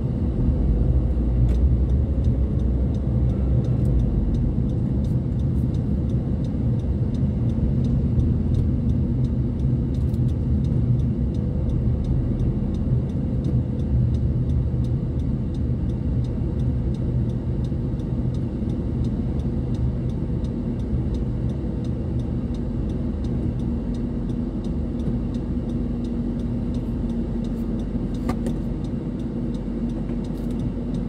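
Car engine and tyre rumble heard from inside the cabin while driving steadily along a city road, a little louder in the first few seconds.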